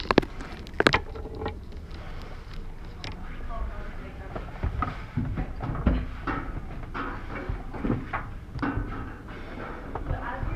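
Indistinct voices talking in a room, with two sharp knocks in the first second.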